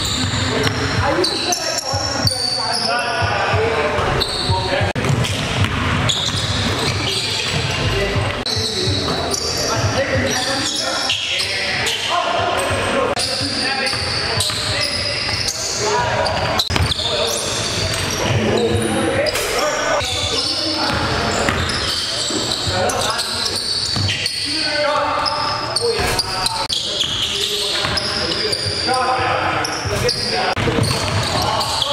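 A basketball dribbling and bouncing on a hardwood gym floor, with players' voices echoing in a large hall.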